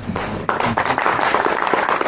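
Audience applauding, starting about half a second in: a dense, steady patter of many hands clapping.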